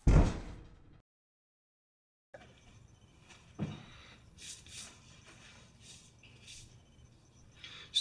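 One heavy slam with about a second of ringing decay, cut off abruptly into dead silence. Faint room noise follows, with a soft thump about three and a half seconds in.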